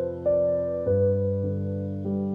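Soft background piano music, with gentle notes and chords struck about every half second and each fading away.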